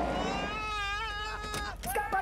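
A man's high-pitched, wavering scream of panic, one long cry of about a second and a half, followed by a short knock near the end.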